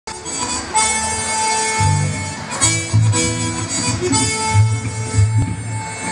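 Live zydeco band playing: a lead instrument holds long notes over a pulsing bass line.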